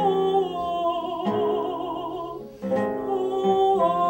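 Female operatic voice singing with wide vibrato over plucked classical guitar accompaniment. A held note fades about two and a half seconds in, and a new phrase begins.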